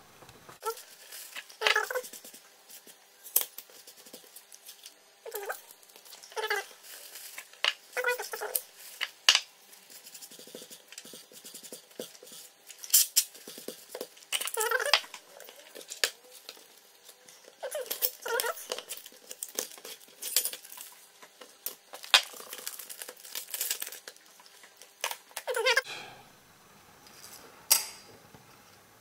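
Paper towel dampened with acetone being rubbed and wiped over a steel solder-paste stencil, the paper crinkling, in irregular bursts of rustling and scraping with short pauses between.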